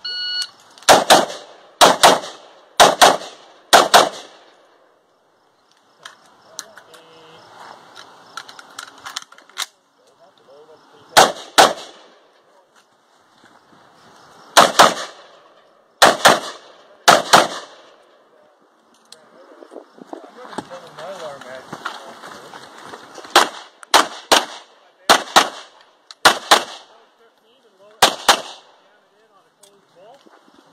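A short electronic shot-timer beep, then single gunshots from an AR-style semi-automatic rifle. The first four come about a second apart, and the rest follow in small groups with pauses of several seconds between.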